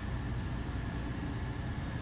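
Steady low background hum and hiss with no distinct sounds: room tone in a pause between words.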